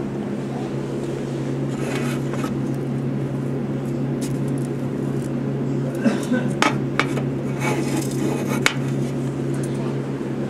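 A small round gold metal tin picked up and handled, giving a few light metallic clicks and clinks between about six and nine seconds in, over a steady low background hum.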